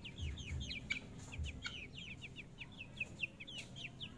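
Young chickens peeping: a rapid, continuous run of short, high, falling notes, with a couple of soft clicks.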